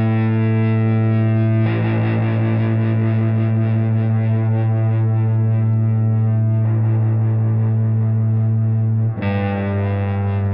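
Les Paul-style electric guitar with effects playing long, held chords, the sound full and steady; the texture shifts a couple of times and a new chord comes in about a second before the end.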